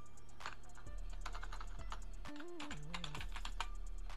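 Typing on a computer keyboard: a run of irregular, quick keystrokes. Background music with a short stepping melody plays underneath.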